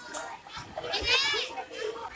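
Children playing and calling out in a pool, with one high-pitched shriek about a second in.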